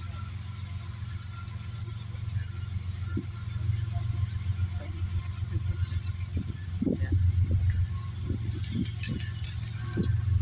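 Low, steady rumble of an approaching diesel freight locomotive hauling an intermodal train, growing a little louder in the second half.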